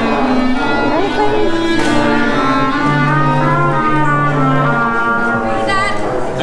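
Student band instruments warming up, strings and brass among them, many sounding different held notes at once rather than playing together, with a low note held twice in the middle.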